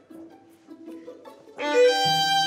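Violin played with the bow: a few quiet held notes, then about one and a half seconds in a loud sustained bowed note starts on the conductor's cue.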